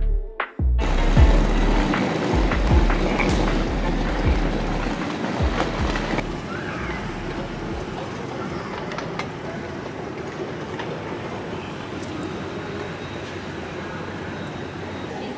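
Background music cuts off abruptly under a second in. A steady, noisy hum of a large terminal hall follows, with a low rumble and a few short knocks in the first few seconds. It grows quieter and duller around six seconds in.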